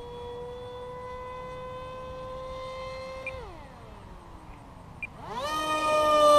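Electric motor and propeller of a foam RC park jet whining steadily under power. About three seconds in the throttle is cut for the landing approach and the pitch falls away as the prop winds down. Near the end the throttle is pushed back up and the whine climbs sharply and gets louder, adding power because the plane is gliding too far.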